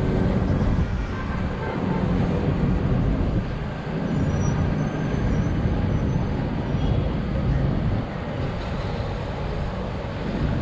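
Steady, fluctuating rumble of city road traffic heard from high above, with cars and buses moving along the roads below.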